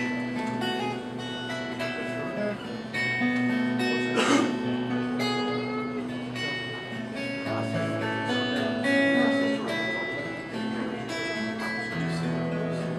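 Solo acoustic guitar playing an instrumental passage of picked notes and chords over a moving bass line, with one sharp hit about four seconds in, the loudest moment.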